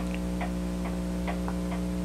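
Wall clock ticking steadily, a little over two ticks a second, over a steady electrical hum.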